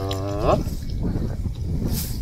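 A man's drawn-out "yaa" call rising in pitch, lasting under a second at the start, followed by low rumbling noise.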